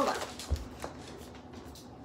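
Handling and movement noise as a plastic mailer package is put down and a person gets up from the table: one dull thump about half a second in, then a faint tap and light rustling.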